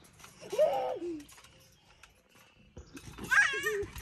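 A young girl's voice: a short call about half a second in, then a high, wavering squeal near the end.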